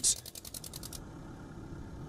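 A low, steady mechanical rattling hum, well below the narration in level, whose upper hiss drops away about a second in.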